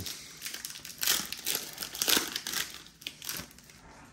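Foil wrapper of a Pokémon trading card booster pack crinkling in several irregular bursts as it is pulled open by hand.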